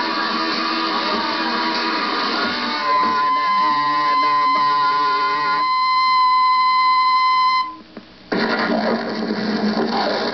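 Lo-fi punk band playing live on a radio broadcast, with strummed electric guitar. About three seconds in, a single high note is held for several seconds. It cuts off near eight seconds in, and a noisy jumble follows.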